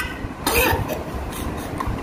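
A single short cough about half a second in, over a low scratching of fingertips rubbing powdered herbs through a steel mesh tea strainer.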